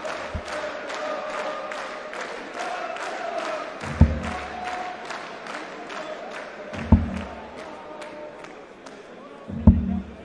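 Three darts thudding into a Winmau bristle dartboard, about three seconds apart, over an arena crowd chanting and singing.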